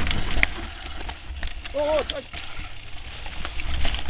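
Mountain bike rattling over a rough downhill dirt trail, with many short clicks and knocks, under a steady low rumble of wind on the microphone.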